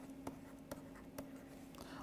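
Faint taps and scratches of a stylus writing a word by hand on a pen tablet: a few soft, short clicks spaced irregularly, about half a second apart, over a faint steady hum.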